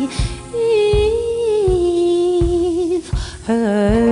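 A female singer holds a long wordless, hummed note with vibrato, stepping down in pitch, over a low drum beat. A breath near the end leads into the next, lower note.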